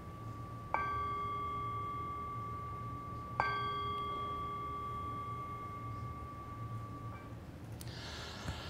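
A meditation bell struck twice, about three seconds apart, each strike ringing on in a long, slowly fading tone. The tone of an earlier strike is still sounding at the start.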